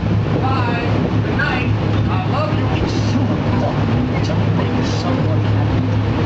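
Engine of an amphibious duck-tour boat running steadily on the water, a constant low drone under rushing wind and water noise, with passengers' voices faintly mixed in.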